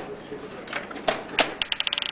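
Plastic chess pieces knocked down on the board and a digital chess clock's buttons slapped in quick succession during a time scramble with about twenty seconds left on each side. Sharp separate clicks come about every third of a second, then a rapid run of high ticks near the end.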